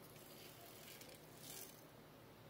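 Near silence: room tone, with a faint brief rustle about one and a half seconds in.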